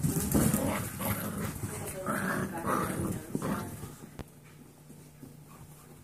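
Seven-week-old Golden Retriever mix puppies vocalizing as they play, loud and busy for the first three and a half seconds, then quieter. A single sharp click about four seconds in.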